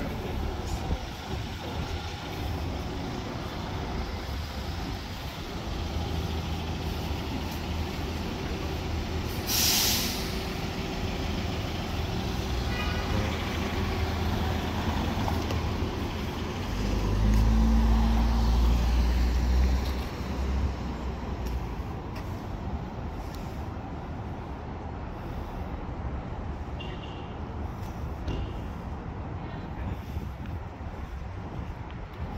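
Downtown street traffic with heavy vehicles. About ten seconds in, a heavy vehicle's air brakes give a short, sharp hiss. Later, a loud, low engine rumble lasts about three seconds and is the loudest sound here.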